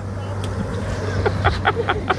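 Outboard motor running with a steady low drone over the wash of churned water, as a small fishing boat circles close by.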